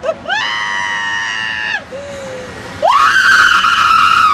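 A rider screaming on a spinning fairground ride: a long, steady held scream, a short falling cry, then a second, higher scream that starts about three seconds in and is still going at the end.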